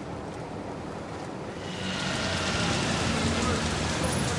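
Steady hiss of rain and wet-road traffic on a city street, growing louder a little under two seconds in.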